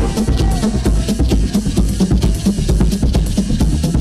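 Live electronic music over a club PA, in a drum-led stretch: a thudding kick drum and snare with fast, sharp hi-hat ticks over a heavy bass line.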